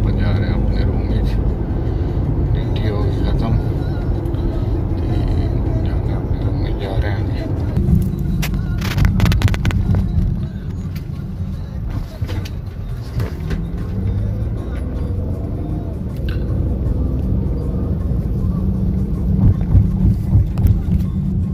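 Car cabin noise while driving: a steady low rumble of engine and tyres, with music or a voice over it and a few sharp clicks about halfway through.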